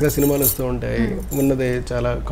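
A man speaking in a steady conversational voice.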